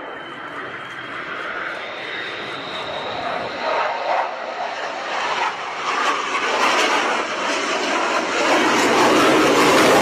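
Twin Pratt & Whitney F119 turbofans of an F-22 Raptor in a low display pass: dense jet noise with a faint high whine early on, growing steadily louder to a peak near the end, then starting to fall away.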